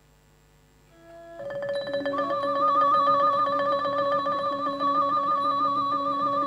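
Thai classical ensemble starting to play after a near-silent pause, coming in about a second in and swelling: a held, wavering melody line over quick, evenly struck mallet-percussion notes.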